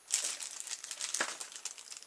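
Small clear plastic bag crinkling as it is picked up and handled: a dense run of crackles starting just after the start.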